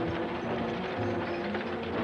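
Horse-drawn wagons rolling, their wooden wheels and running gear giving a dense, steady rattling and clicking.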